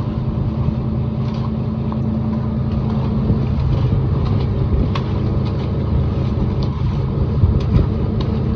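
A boat's engine running steadily with a low hum, with a few light clicks from the wire trap and catch being handled.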